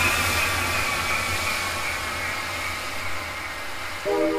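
Electronic hardcore dance music in a DJ mix, at a breakdown: after the beat drops out, a noisy wash with a low hum slowly fades. Right at the end a new melodic section comes in with steady held notes.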